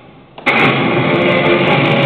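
A pachislot machine's speaker: a sound fades low, then about half a second in, loud music with electric guitar cuts in abruptly and plays on steadily.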